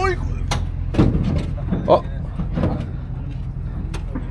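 A few sharp knocks and clunks as a plastic jug is handled at a pickup's bed, over the steady low hum of an idling engine.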